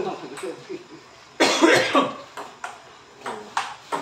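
Table tennis ball clicking sharply off the table and paddles several times, quickening near the end. About a second and a half in there is a loud, short burst of voice like a cough or shout.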